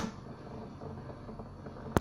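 Quiet room tone, with a single sharp click near the end.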